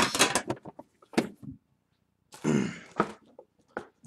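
A man's short wordless vocal sound about two and a half seconds in, with a couple of light clicks around it.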